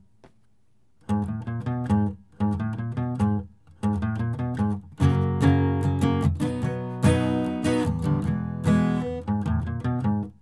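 Steel-string acoustic guitar playing a single-note country lick in E, fretted notes on the low strings alternating with open strings, picked three times in short phrases after a brief pause. About halfway through it opens into a fuller, louder passage with chords strummed and left ringing.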